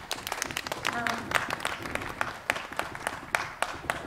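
Audience applauding with scattered, irregular handclaps from a small crowd, as the performers bow.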